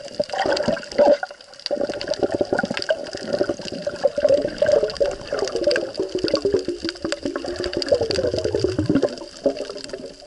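Water rushing and gurgling around an action camera held underwater while snorkeling, over a constant crackle of fine clicks. Near the end a low gurgling tone slides downward.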